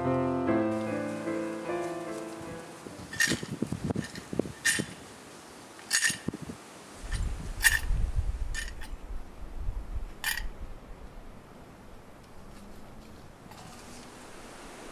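Piano music dying away over the first couple of seconds. Then about six short, sharp clicks spaced a second or more apart, with a low rumble in the middle.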